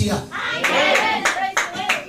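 A small congregation applauding: a run of uneven hand claps, with voices calling out among them.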